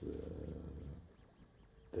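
A man's voice: a low, rough, drawn-out hesitation sound lasting about a second, then a short pause before he goes on speaking near the end.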